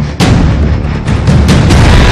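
News-programme title music with a run of heavy, booming percussive hits, the loudest just after the start and several more in quick succession in the second half.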